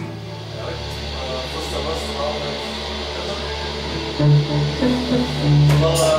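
Electric guitar and bass guitar playing the slow opening of a gothic rock song: a low note held under picked guitar notes, with louder low notes stepping in pitch from about four seconds in.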